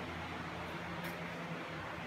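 Steady low room hum and hiss, with one faint click about a second in.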